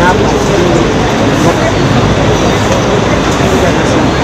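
Loud crowd babble: many voices talking over one another at once, steady throughout with no pauses.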